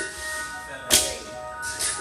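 A single sharp clank from a loaded barbell and its plates during deadlift reps, about a second in, over steady background music.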